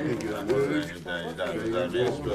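Several people talking at once, with no single clear voice.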